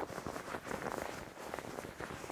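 Crinkly rustling of the deflated plastic air tube inside a hoodie's hood as hands squeeze and crumple it: many small crackles over soft fabric rubbing. The tube does rustle (바스락바스락) but is soft rather than stiff.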